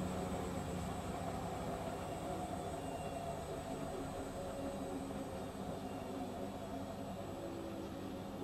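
Several Hotpoint washing machines running spin-only cycles together, a steady motor hum made of several overlapping tones, some drifting slightly in pitch.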